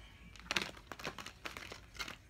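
A tarot deck being shuffled by hand: faint, irregular soft clicks and slides of cards against each other.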